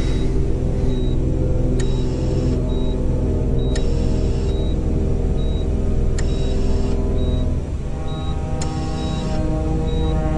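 Dark, droning film score with a short, high beep repeating a little more than once a second, like a hospital heart monitor. A sharp tick with a brief hiss comes every two seconds or so, and the drone thickens with higher held tones near the end.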